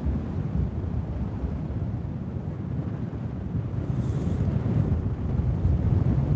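Wind buffeting a phone's microphone during paraglider flight: a steady low rumble of airflow that grows slightly louder in the second half.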